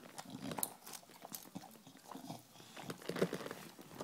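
English bulldog chewing on a plastic drink bottle: irregular clicks and knocks of the plastic in its teeth, mixed with noises from the dog itself.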